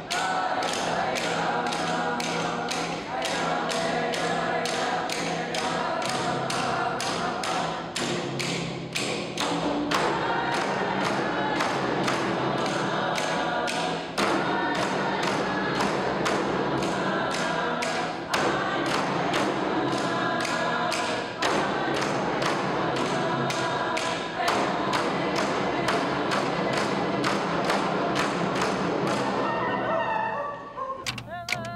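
Inuvialuit drum song: a group of large hand-held frame drums struck with sticks in unison, a steady beat of about two strikes a second, under group singing.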